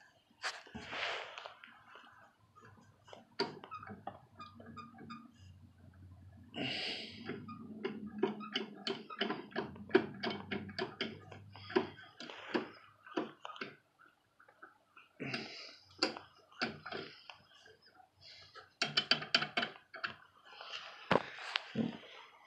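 Handling noise: irregular light clicks, taps and rustles as a hand moves over and touches the metal parts of a stopped garden tractor and the phone is shifted about.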